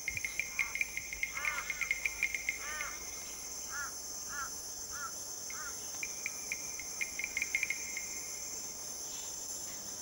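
Insect chorus: a steady high-pitched drone under a fast cricket-like trill that stops about three seconds in and starts again about halfway through. Between the trills comes a run of short, evenly spaced chirps, about two a second.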